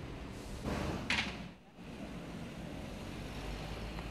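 Steady low background rumble of a busy airport terminal, with a brief hissing burst about a second in and a short drop in level just after it.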